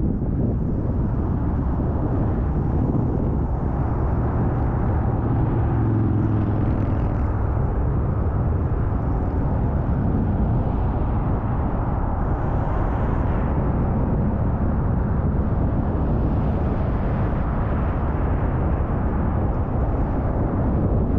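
Steady car road and engine noise heard from inside the cabin, a low rumble that changes little, with a brief deeper engine hum about six seconds in.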